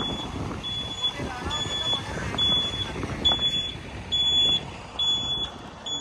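An electronic warning beeper repeats a single high-pitched beep about once a second, over the low rumble of an engine.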